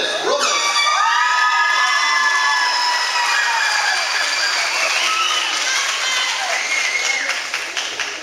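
Crowd cheering and applauding, with several long high whoops and shouts held over the clapping; it dies down near the end.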